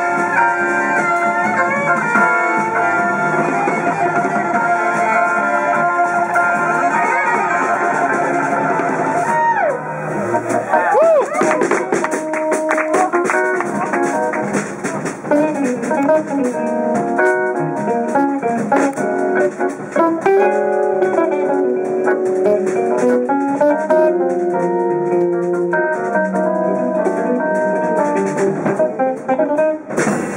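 Jazz-fusion band playing live, with electric guitar and drum kit. Sustained chords ring out for about ten seconds, then give way, after a bent note, to a busy, fast-moving passage over drums.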